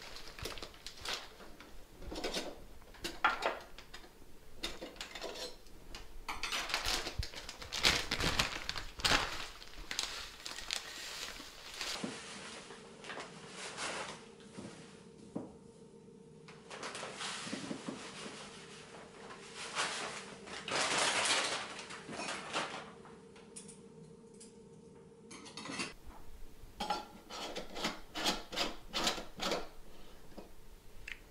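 Stainless steel distiller canisters, lids and basket being handled, clinking and knocking irregularly against each other and the counter.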